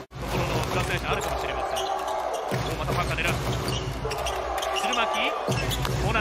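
A basketball being dribbled on a hardwood court during game play, a string of sharp bounces over the noise of a large arena.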